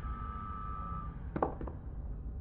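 Sci-fi sound design from a TV episode's soundtrack: a low steady hum with a single electronic beep about a second long, then a few quick clicks about a second and a half in.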